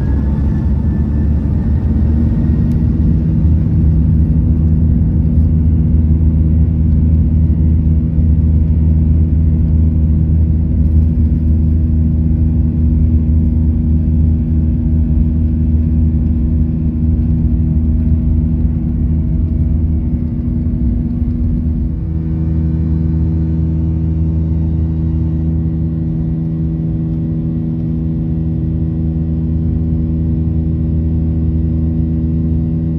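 Boeing 737-800 jet engines at takeoff thrust, heard from the cabin beside the wing: a loud rumble of the takeoff roll with steady engine tones over it. About two-thirds of the way through, the rough rumble drops away as the plane lifts off, and the even drone of the engines carries on.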